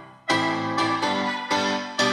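Electronic music with piano-like keyboard chords, struck about twice a second after a brief break near the start. It plays through a homemade two-watt amplifier on Soviet GT703B germanium output transistors into an old Soviet 6AS-2 speaker.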